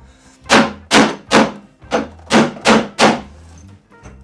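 Hammer striking the side of a wooden stereo-cabinet mounting board, seven sharp blows in about two and a half seconds, knocking the board loose from the metal clamps nailed into the cabinet.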